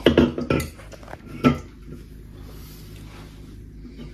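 Metal fork and spoon clinking and scraping against a plate while cutting food: a quick cluster of clicks at the start and one sharper clink about a second and a half in.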